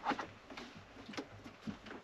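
Faint scattered clicks and small knocks of a plastic connector plug being handled and lined up with the connection port on an Ecoflow Wave 2 portable air conditioner.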